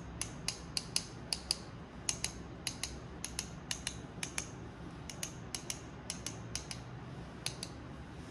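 Sharp wooden clicks of one paintbrush's handle tapped against a paint-loaded fan brush, often in pairs and about three a second: flicking a splatter of acrylic paint onto the canvas.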